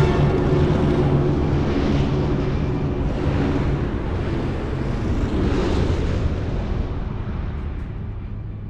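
Rushing, rumbling drone of B-24 Liberator bombers' engines and slipstream in flight, swelling a little past the middle and then fading away gradually.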